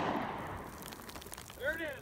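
A pistol shot fired down onto lake ice, its report fading away over about a second and a half.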